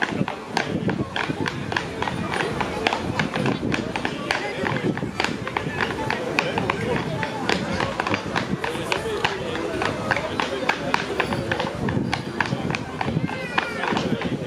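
Step clogs with wooden soles tapping out quick, irregular rhythms on a dance floor, over a fiddle-led dance tune.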